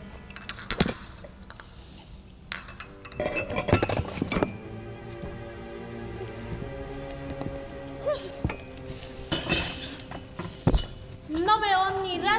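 Teacups, saucers and plates clinking against each other on a table as they are handled, in several clusters of sharp clinks, over background music with held tones. A voice comes in near the end.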